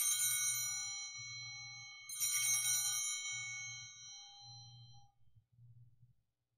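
Altar bells, a set of small handbells, shaken twice about two seconds apart, each ring fading away over a few seconds. They mark the elevation of the chalice just after the consecration.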